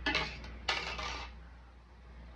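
Small parts clinking and rattling in a clear plastic bag as it is handled, in two short bursts, the second a little longer.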